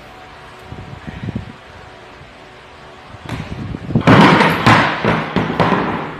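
Loud crash with several thuds, starting a little over three seconds in and loudest for about a second and a half before fading: gym equipment knocked over and hitting the floor during a failed box jump.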